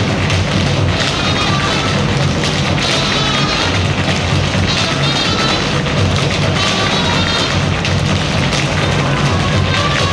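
Music playing together with the clatter of many tap shoes from a large group of tap dancers striking a stage floor.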